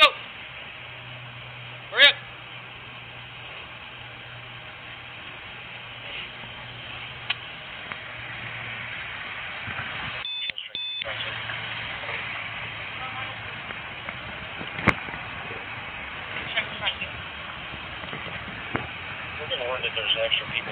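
Body-worn camera's microphone carrying steady rustling and handling noise as the officer walks, over a low steady hum. A short voice comes about two seconds in, a couple of sharp clicks follow, and the sound cuts out for under a second near the middle.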